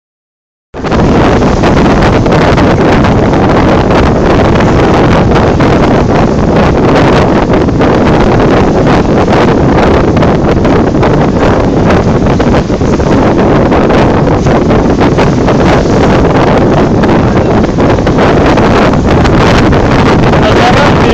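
Loud, steady wind buffeting the microphone on the open deck of a moving boat, starting abruptly just under a second in.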